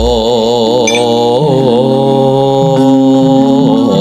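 A man singing long, wavering, melismatic "oh" notes into a microphone in a chant-like style, over gamelan accompaniment.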